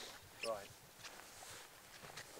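A brief vocal sound from a man about half a second in, then faint scattered clicks and footsteps on grass.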